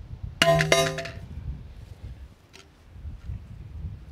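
A brick dropped from chest height strikes an XTECH MAG47 polymer AK magazine lying on a steel plate: one sharp clang about half a second in, the plate ringing and fading within about a second.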